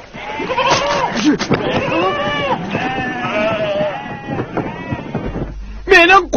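A flock of sheep and goats bleating, many calls overlapping one another.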